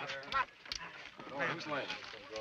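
Several men's voices calling out excitedly over a dice roll, overlapping exclamations rising and falling in pitch.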